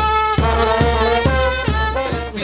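Street brass band playing lively carnival dance music: trumpet and saxophone lines over a steady low drum beat, a little over two beats a second.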